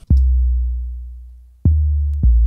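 Long 808 kick sample (Ableton's 'Kick Sub 808 Long C1') struck twice as a bass note. Each hit has a short click at the start and then a deep sub-bass tone that slowly fades away over about a second and a half. The second hit comes near the end.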